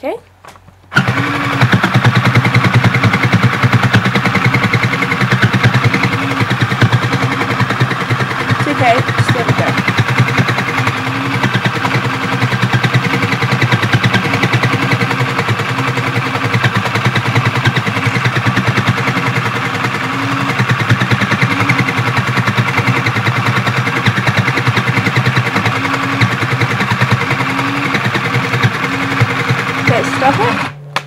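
Battery-powered Sew Cool toy sewing machine running steadily, its needle punching rapidly up and down through the fabric as it stitches. It starts with a press of its button about a second in and keeps going without a break.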